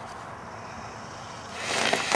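Steady outdoor background hiss, then about one and a half seconds in, a man bursts into loud, choppy laughter.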